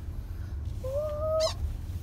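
Steady low rumble of a car on the move, heard inside the cabin, with one high-pitched, slightly rising "ooh" from a person's voice about a second in, lasting about half a second.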